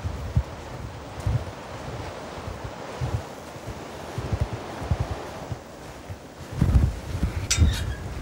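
Wind buffeting the microphone in irregular gusts, with a steady rustle. Near the end, a few short metallic clinks as a steel field gate's latch is handled.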